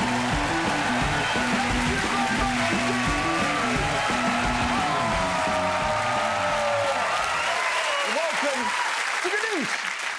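Studio audience applauding and cheering over the end of a TV show's upbeat theme music. The music stops about seven seconds in, and the clapping and cheering carry on alone.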